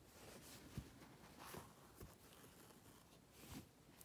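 Near silence with a few faint rustles and soft taps from hands handling a bamboo embroidery hoop, cotton fabric and thread.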